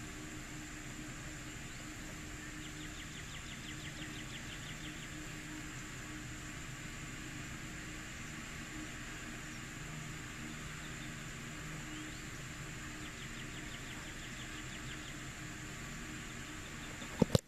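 Outdoor ambience: a steady hiss with a faint low hum, and twice a rapid trill of clicks, a few seconds in and again near the end.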